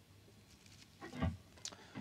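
Near silence: quiet room tone, with one faint, brief low sound about a second in and a soft click near the end.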